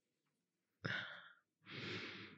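A woman sighing softly close to the microphone: two breaths in quick succession about a second in, the second one longer.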